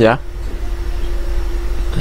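A steady low background hum with a faint steady tone above it.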